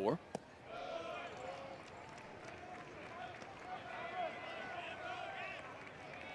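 A pitched baseball pops once into the catcher's mitt just after the start, then a stadium crowd chatters steadily.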